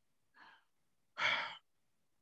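A man breathing: a faint short breath, then a loud sigh just after a second in, lasting about half a second.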